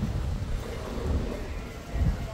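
Wind buffeting the microphone: an irregular low rumble that swells and fades in gusts.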